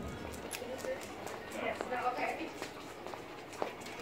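A dog's claws clicking irregularly on a hard tiled floor as she walks on the leash, with faint voices in the background.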